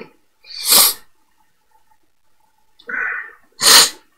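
A man sneezing twice, about three seconds apart, with a short build-up sound just before the second sneeze.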